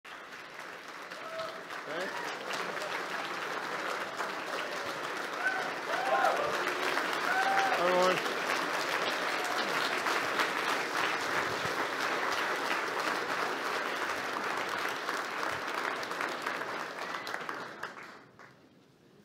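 A large audience applauding, with a few cheers and whoops in the middle; the clapping swells over the first few seconds and dies away near the end.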